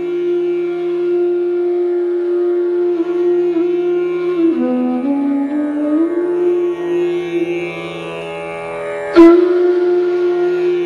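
Meditative Indian-style instrumental music: a flute holding long notes that glide slowly in pitch over a steady low drone. A sharp struck note comes in about nine seconds in, the loudest moment.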